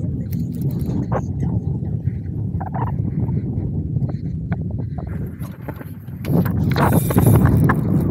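Wind buffeting the microphone on open, choppy water, with scattered knocks and clicks from gear on a plastic kayak. The wind grows louder about six seconds in.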